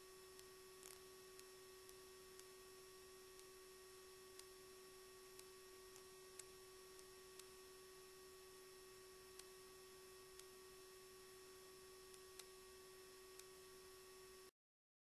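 Near silence: a faint steady electronic tone with faint ticks about once a second.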